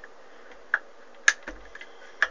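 Small switches on an SWR meter being flicked, giving two sharp clicks about half a second apart, then a fainter click with a dull thump.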